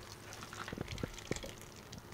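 Water sprinkling from a watering can's rose onto bedding in a trough, re-wetting it, with a few short clicks in the middle.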